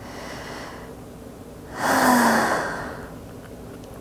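A woman's deep audible exhale, a breath let out with a faint voiced sigh, about two seconds in and lasting about a second, after a fainter breath in.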